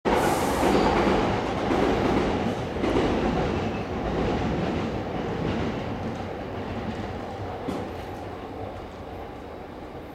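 A train running on rails with wheel clatter, loudest at first and then fading steadily as it moves away.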